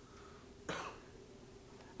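A single short cough about two-thirds of a second in, over a faint steady room hum.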